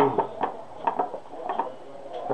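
A few light, irregular clicks and taps of small hard objects being handled, about six in two seconds, as a dropped screw and tools are picked over.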